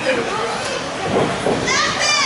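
Crowd of spectators, many of them children, shouting and calling out over one another, with a high-pitched yell near the end.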